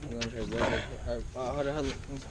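A man's voice making two drawn-out cries with wavering pitch, the first just after the start and the second in the last half second, sounds of effort as he reaches down to get hold of a large sturgeon alongside the boat.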